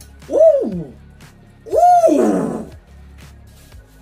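A person's voice giving two drawn-out hooting whoops, each rising and then falling in pitch, the second one longer.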